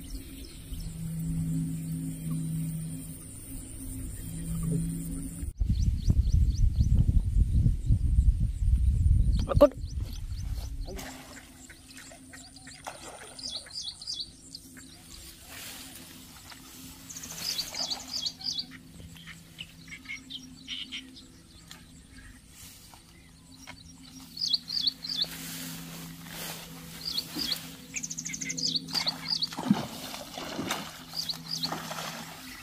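Outdoor ambience at a lakeshore: small birds chirping in short repeated phrases from about halfway on, over a steady low hum. A loud low rumble on the microphone comes about five seconds in and lasts several seconds, and near the end a hooked fish splashes at the surface.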